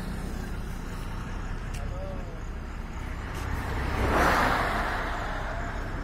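A road vehicle passes, its noise swelling to a peak about four seconds in and then fading, over a steady low rumble.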